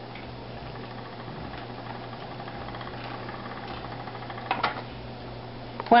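Wooden flyer spinning wheel running steadily while plying yarn, a steady even whir of the turning wheel and flyer. One brief louder noise about four and a half seconds in.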